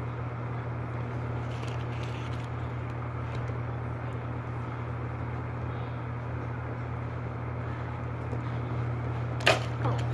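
Small plastic parts being handled and pressed onto a plastic action figure, with a few faint clicks, over a steady low hum. Near the end comes one sharp plastic snap, the loudest sound.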